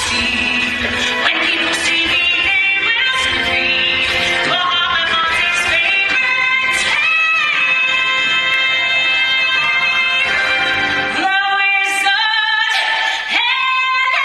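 A female lead singer belting a musical-theatre number over a live theatre orchestra, holding long high notes. Near the end the accompaniment thins and a long sustained note begins, the song's final climax.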